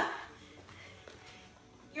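A woman's loud spoken word cut off in the first moment, then quiet room tone with no clear sound until another word right at the end.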